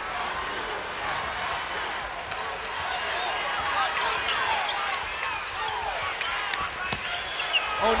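A basketball being dribbled on a hardwood court, heard as a few scattered taps, under the steady hum of a large arena crowd.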